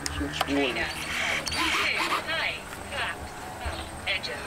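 Indistinct conversation: several voices talking in the background, with no clear words.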